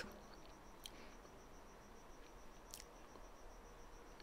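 Near silence: a faint steady high whine, with two faint ticks about a second in and near three seconds in, as a sculpting tool cuts a slab of air-dry clay along a metal ruler.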